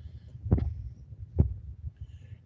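Two dull thumps about a second apart on a hand-held phone's microphone, over a low rumble: handling noise from the phone being gripped and moved.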